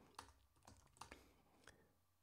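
A few faint computer-keyboard keystrokes, scattered clicks that finish typing and entering a terminal command.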